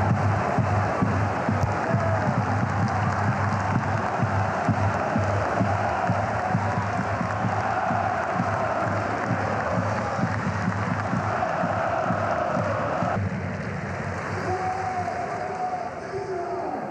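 Football stadium crowd cheering and singing along with music after a home goal. About thirteen seconds in the sound cuts suddenly to quieter crowd chanting.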